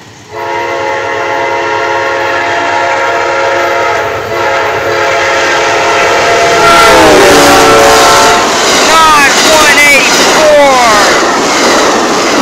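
An Amtrak passenger train's multi-chime horn sounds one long, steady chord as the train approaches the grade crossing. About seven seconds in, the chord drops in pitch as the locomotive passes. Loud noise of the train rushing by follows, with a run of short falling tones.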